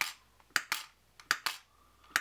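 The clicker die-popper of a Trouble travel game being pressed twice, popping the small die under its clear plastic dome. Each press gives a quick double click.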